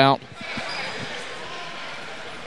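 Gymnasium ambience: a steady, echoing murmur of the crowd and benches in the hall, with a few faint thuds of a basketball bounced on the hardwood floor in the first second.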